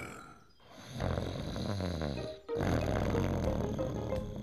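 Cartoon pig character snoring in his sleep: two long, low snores, the first starting about a second in and the second following a short pause.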